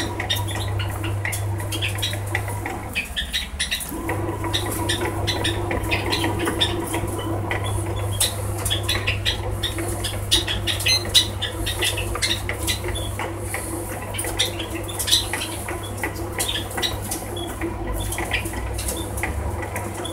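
BORK bread maker kneading dough in its pan: a steady motor hum with many short irregular clicks from the paddle working the dough. About three seconds in, the motor stops for roughly a second, then starts again.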